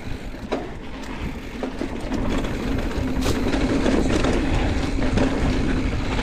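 Santa Cruz Megatower full-suspension mountain bike riding down a dirt trail: continuous tyre rumble with clicks and rattles from the bike over rough ground, and wind buffeting the microphone. It grows louder about two seconds in.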